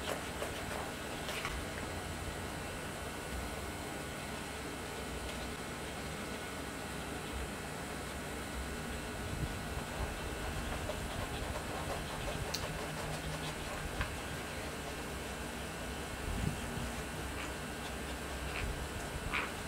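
Steady low hum and hiss of background noise, with a few faint taps scattered through it.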